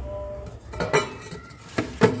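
Stainless steel dishes clinking together as a lidded steel pot is taken off a refrigerator shelf: two sharp metal clinks, about a second in and near the end.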